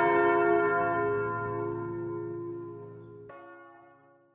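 A bell rings out with one strike that slowly fades, then a second, fainter strike about three seconds in, dying away by the end.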